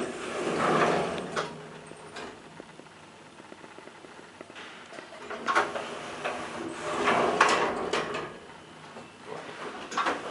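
Elevator car's multi-panel sliding doors sliding open in the first second or so, then sliding shut with a run of clicks from about five to eight seconds in.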